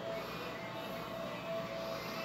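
Steady background noise, a hiss with a low hum, with faint held tones that come and go.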